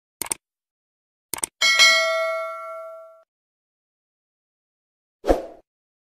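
Subscribe-button animation sound effects: two quick double mouse clicks, then a bright bell ding that rings and fades over about a second and a half. A short thump comes near the end.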